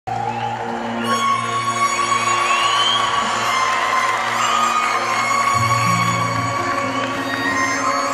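Live band playing the instrumental introduction of an Uzbek pop song, with held melodic notes over a bass line. An audience cheers and applauds over the music.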